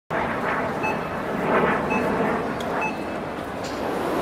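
Jet airliner engines running as the planes taxi: a steady rushing noise that swells and eases a few times.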